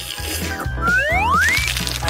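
Background music with a steady beat. About a second in, a rising whistle-like sound effect sweeps upward.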